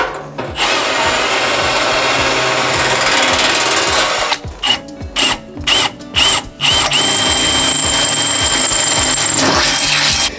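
Cordless drill boring holes through thin black sheet-steel stove pipe to fit a damper rod. It runs steadily for about four seconds, then in several short stop-start bursts, then in another steady run with a thin high whine that cuts off just before the end.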